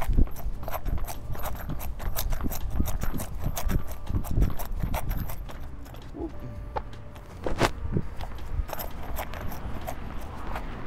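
Footfalls of running shoes on asphalt during a light jog, a quick steady rhythm of about three steps a second.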